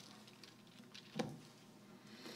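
Faint rustling and light clicks of Bible pages being turned at a lectern, with one short, louder bump about a second in.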